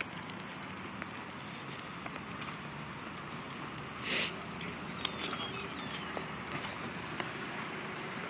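Steady outdoor background noise, with a short rushing burst about four seconds in and a few faint clicks.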